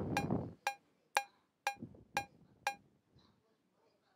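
Logic Pro X's metronome playing an Ultrabeat cowbell sample (note G#2) on each beat at 120 bpm: a short pitched strike every half second, six in all, stopping about two and three-quarter seconds in.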